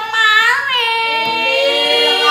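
A high, child-like voice singing long held notes over music.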